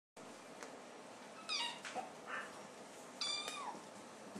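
Sphynx cat meowing twice in high calls, about a second and a half in and again near the end, the second one falling in pitch as it ends. A short, fainter call comes between them.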